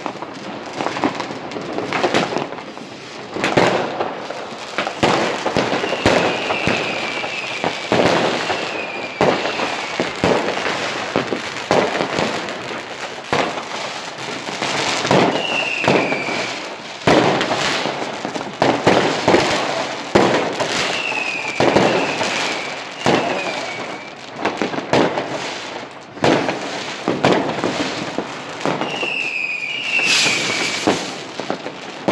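Fireworks and firecrackers going off all around in a dense, continuous run of sharp bangs and crackles. Short whistles falling in pitch come through several times.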